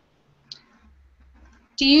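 A single short, sharp click about half a second in, in an otherwise quiet pause, with a faint low hum after it.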